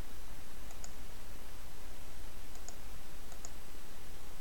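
Faint computer mouse clicks, three in all, each a quick pair of ticks (button press and release), over a steady low hum.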